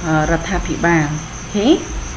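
A person speaking Khmer, explaining a lesson, with a steady high-pitched whine running under the voice throughout.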